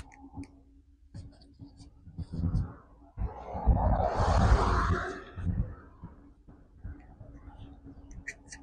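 A car passes close by, its tyre and engine noise swelling to a peak about four seconds in and then fading away. Low gusts of wind rumble on the microphone of the moving bicycle throughout.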